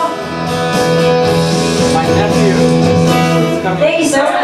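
Acoustic guitar playing chords that ring out as a song comes to its end, with a voice starting up near the end.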